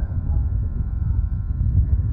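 Wind buffeting an outdoor microphone: an uneven low rumble.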